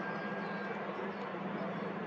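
A steady low-pitched hum with an even background hiss, unchanging throughout.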